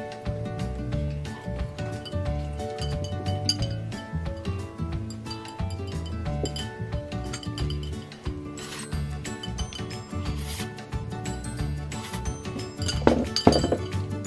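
Background music with a steady beat, over which chopsticks clink and scrape against a ceramic plate as the last noodles are picked up. Near the end, a brief rising vocal sound.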